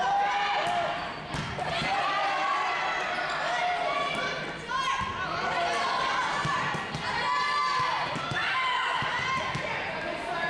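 Volleyball rally on a gym court: players' calls and shouts, sneakers squeaking on the hardwood floor, and several sharp thumps of the ball being played, all echoing in the hall.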